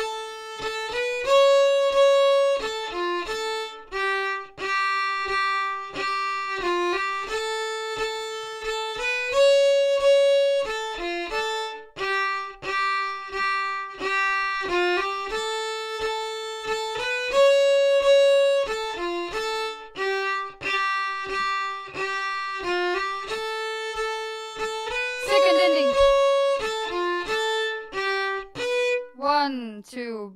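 Solo violin playing an Estonian folk tune: the B part looped over and over with its two different endings, the phrase coming round about every eight seconds at a steady, moderate teaching pace.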